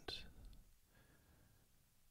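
Near silence: a man's soft hypnotic voice trails off in the first moment, leaving only faint room tone.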